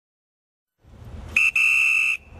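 Silence, then low street traffic rumble comes in partway through, and a crossing guard's whistle gives one loud, shrill blast, broken briefly just after it starts.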